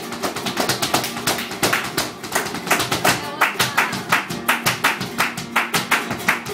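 Live flamenco: an acoustic flamenco guitar strumming and picking, with a quick run of sharp percussive strikes from the dancer's shoes stamping out zapateado footwork on the wooden stage.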